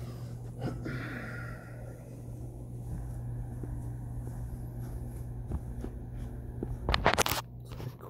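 Faint footsteps and phone handling noise over a steady low room hum, with a brief loud rustle against the microphone about seven seconds in.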